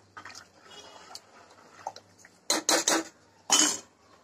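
A spoon stirring thin curry in an aluminium pressure-cooker pot: soft scraping and sloshing, then three quick clanks of the spoon against the pot about two and a half seconds in, and one more shortly after.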